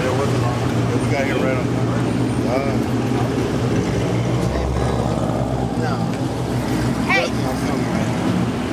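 Muscle-car engines running with a steady low rumble as the cars roll slowly past, a deeper rumble swelling about halfway through as one passes close. Crowd voices over it.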